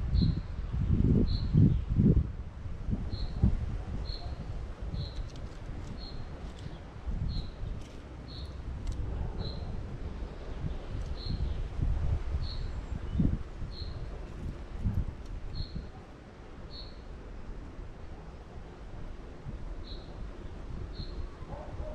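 A bird repeating a single short, high call note about once a second. Under it run irregular low rumbles and bumps, loudest in the first couple of seconds.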